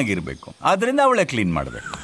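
A man speaking in Kannada, his voice rising and falling in pitch over two short phrases, with a brief pause between them.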